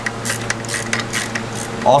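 Electric fan running with a steady hum and rush on the microphone, with a few light, irregular metallic clicks from a hand tool working on the scooter's engine.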